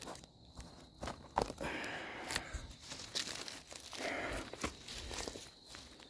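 Chicken of the woods bracket fungus being pulled and broken off a fallen log by hand: irregular snaps and tearing, with rustling of leaves and twigs.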